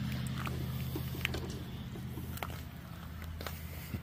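Tiger Joe toy tank's electric drive motor running with a steady low hum that slowly fades, with a few faint clicks.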